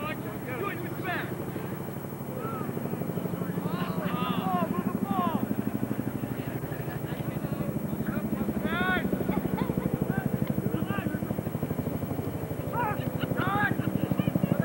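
Scattered shouts and calls of players and spectators at an outdoor lacrosse game, short rising-and-falling yells. Under them runs a steady, rapid low throbbing, a little louder after about two seconds.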